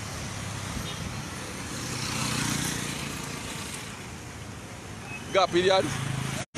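Street traffic noise, with a motor vehicle passing and swelling loudest around two to three seconds in.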